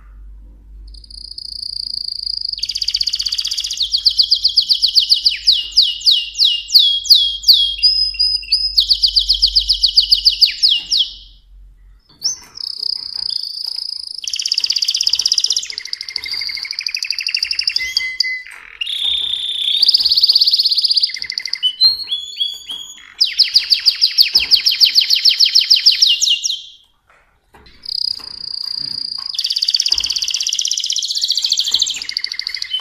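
Mosaic canary singing: long phrases of rapid trills and rolling repeated notes, with brief pauses about twelve seconds in and again near twenty-seven seconds.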